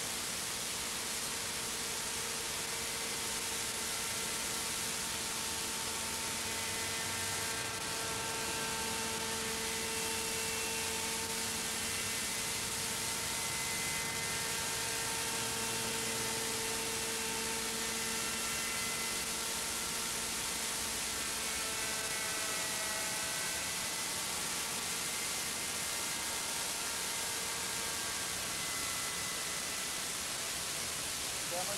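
Steady hiss with the faint, thin whine of a model helicopter's glow engine and rotor running in flight above it; the engine's pitch wavers and shifts about two-thirds of the way through.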